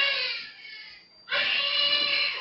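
A newborn baby crying in two long, high-pitched wails, the second starting a little over a second in: the infant crying in pain while being circumcised.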